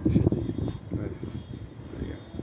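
Indistinct talking over a low, uneven rumble, loudest in the first half second.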